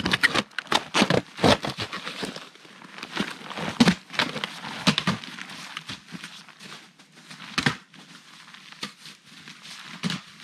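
Footsteps crunching and scraping through snow over rock, an uneven crackle of steps, loud and close at first and then fainter as the walker climbs away, with a couple of sharper snaps along the way.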